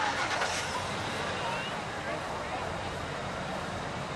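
Steady outdoor background noise with faint, indistinct voices of people talking at a distance.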